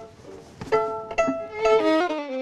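Violin being bowed: after a brief pause, a phrase of several separate notes starts just under a second in.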